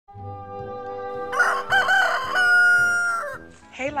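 A rooster crowing once, starting about a second and a half in with a few wavering notes and ending in a long held note that falls away, over steady background music.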